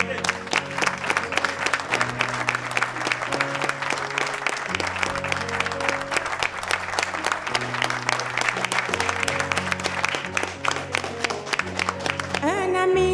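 An instrumental passage of a song, with a bass line of held notes, while a crowd claps along in a quick, steady rhythm.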